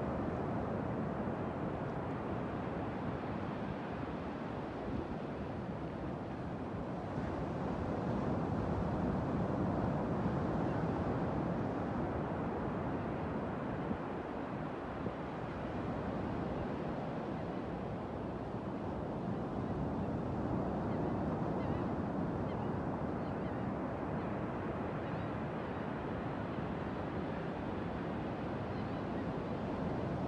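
Ocean surf washing onto a beach: a steady rush of water that slowly swells and eases, loudest about a third of the way in and again about two thirds through.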